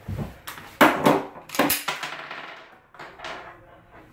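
Sharp clicks and knocks of a SCCY CPX-1 9mm pistol being handled for maintenance, with several separate clicks, the loudest about a second in and again a little later, then quieter ones toward the end.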